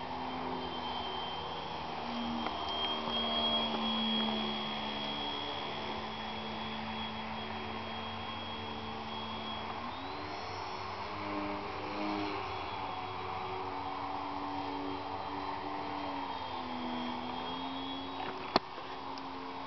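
Electric motor and propeller of a small radio-controlled foam model plane running in flight, its pitch stepping up and down with the throttle and rising about ten seconds in. It is loudest around three to four seconds in.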